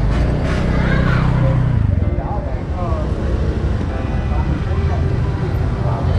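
Busy street-market ambience: people talking over a steady low rumble of motor traffic, with a motorbike engine running close by during the first two seconds.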